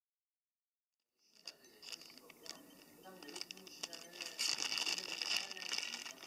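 Dead silence for the first second or so, then scattered clicks and clinks of a spoon and glass holding dry ice, over a hiss that grows louder toward the end.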